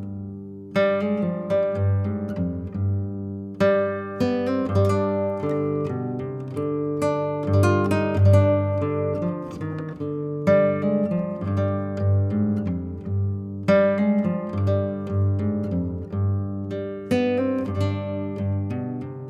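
Instrumental background music on plucked strings, in the manner of an acoustic guitar, with picked notes and strummed chords that ring and fade.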